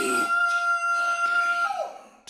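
Electronically processed male voice holding one steady high note, then sliding briefly downward and fading out near the end.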